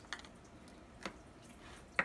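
A few light clicks and taps from seasoning containers being handled, the sharpest one at the very end.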